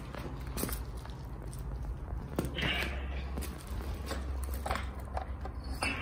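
Footsteps and handling noise on loose brick rubble and dry leaves: scattered crunches and clicks, with a brief scrape about two and a half seconds in, over a low rumble.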